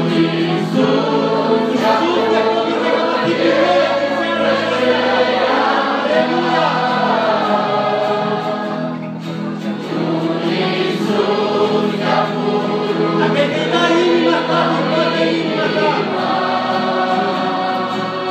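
Large mixed choir of men, women and children singing a hymn together, loud and steady, with a brief dip about nine seconds in.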